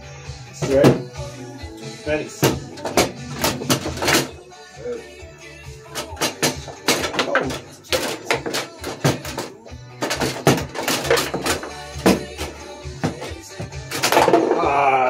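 Foosball being played: the ball is struck by the plastic men and knocks against the table, sharp irregular clacks coming in quick clusters. Music plays in the background.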